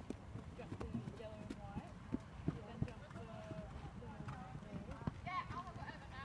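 Hoofbeats of a New Forest pony cantering on a sand arena, with a few sharper thuds a little past two seconds in and near three seconds. People are talking quietly in the background.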